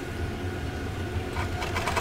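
Electric sewing machine running steadily, stitching hand-spun yarn down onto fabric (couching) through an open-toe embroidery foot.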